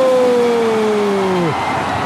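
A Brazilian sports commentator's drawn-out goal cry, "Gooool": one long held shout that sags slowly in pitch and breaks off about a second and a half in.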